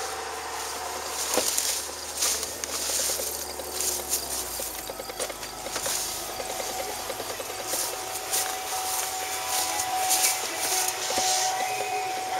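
Outdoor hiss with brief rustling crackles, roughly one every second, from footsteps through long grass.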